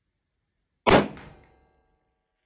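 A 6mm Creedmoor bolt-action rifle fired once, just under a second in: a single sharp crack that dies away over about half a second with a short ringing tail.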